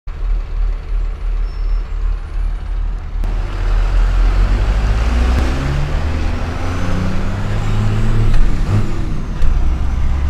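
Cummins 6BT inline-six turbo-diesel in a Chevy squarebody truck, heard inside the cab: a low idle rumble, then from about three seconds in louder as the truck pulls away, the engine note rising and falling as it accelerates.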